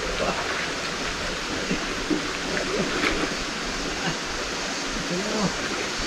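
Steady rush of a swollen, muddy river running fast in rainy-season flow, with faint distant voices calling out now and then.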